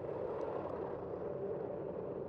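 Steady rushing wind and road noise from a camera on a moving bicycle, with city traffic close by, including a bus alongside.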